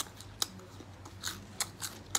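Fried cicada nymphs being bitten and chewed close to the microphone: about five sharp, brief crunches spread through the two seconds.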